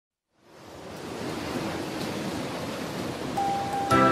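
Even rushing noise that fades in over the first second and then holds steady. Near the end a single held note sounds, and music comes in with chords.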